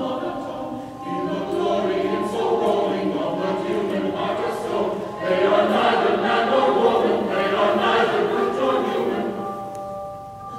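Mixed choir singing with handbells ringing held notes. The singing grows louder about five seconds in and fades near the end.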